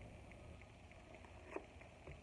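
Near silence: room tone, with one faint click about one and a half seconds in.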